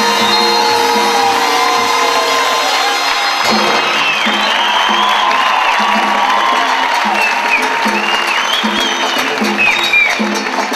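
Live salsa band playing, with congas driving the rhythm. About three and a half seconds in, the held notes drop away and the percussion carries on under audience cheering and whoops.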